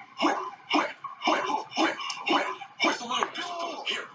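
Rap song playing: a rapper's vocals in a steady rhythm of about two bursts a second.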